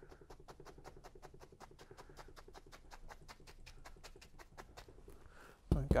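A two-inch bristle brush loaded with thick dark oil paint tapping rapidly against a canvas on an easel: a long, even run of soft, sharp taps, about eight a second, as foliage is dabbed on wet-on-wet.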